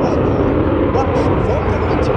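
Steady jet noise from the F-22 Raptor's twin Pratt & Whitney F119 turbofans as the fighter flies its display overhead, with people's voices mixed in close by.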